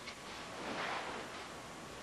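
Faint rustling of martial-arts uniforms and feet shuffling on the floor as students turn in a kata, swelling softly about a second in.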